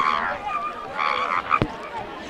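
A young woman's voice making two short, high, shouted non-word sounds, with a sharp knock from microphone handling about a second and a half in.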